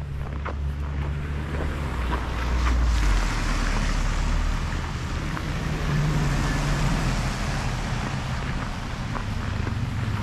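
Cars passing on a wet, slushy street, their tyres hissing on the road and swelling as they go by, with a low rumble of wind on the microphone.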